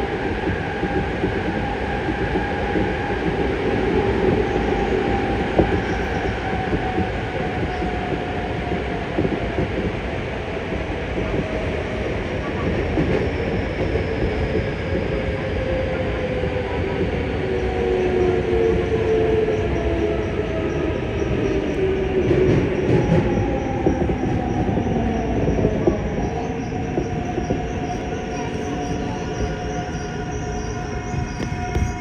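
Yokohama Municipal Subway 3000A train running through a tunnel, its Mitsubishi GTO-VVVF inverter motor drive whining over the rumble of wheels on rail. From a little before halfway, several of the inverter tones fall steadily in pitch as the train brakes for a station.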